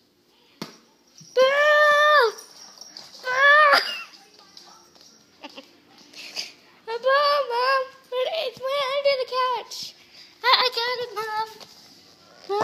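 A child's voice making wordless, sing-song calls at a high pitch: two long held calls in the first four seconds, then a run of shorter, wavering ones from about seven seconds on.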